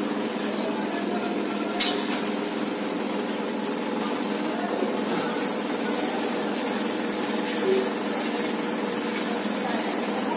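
Steady hissing background noise with faint voices in it, and one sharp click about two seconds in.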